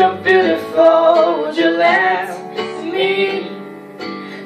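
Young female voice singing a drawn-out, wavering line on the word "your" into a handheld microphone, over a backing track with a steady bass; the phrase fades away near the end.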